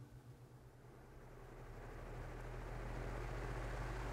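Hurricane 18-inch wall-mount fan switched on at its lowest setting and spinning up: a few faint clicks, then a soft rush of moving air that grows steadily louder from about a second in. Quiet running.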